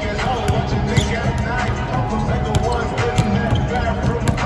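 Basketballs bouncing on a hardwood court, several sharp thuds at uneven intervals, over steady hip-hop music with rap vocals playing on the arena sound system.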